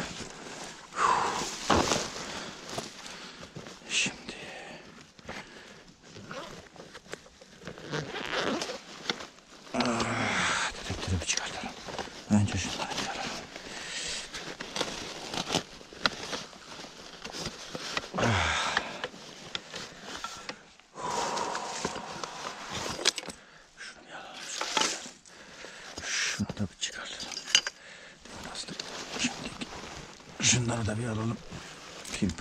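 Irregular rustling and crunching in dry fallen leaves, with scrapes and clicks as a bag of metal-detecting gear is handled and opened.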